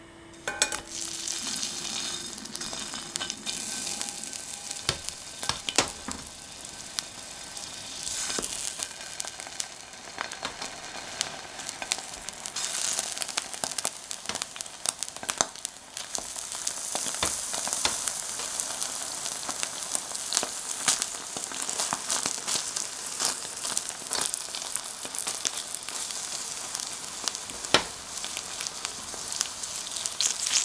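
Aubergine wedges coated in miso and olive oil sizzling and frying in hot oil in a frying pan. The sizzle starts sharply about half a second in, as the first wedge goes into the oil, and then keeps up steadily. Metal tongs click against the pan now and then as the wedges are placed and turned.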